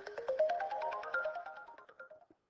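Electronic reward jingle from the Number Cruncher widget signalling a correct answer: a quick run of notes climbing in pitch, then holding a high note, over a fast patter of ticks.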